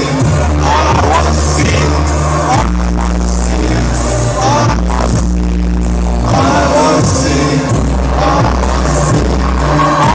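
Loud live electronic rap music over a concert PA, heard from within the crowd: deep bass notes held a second or two each under a sung vocal line.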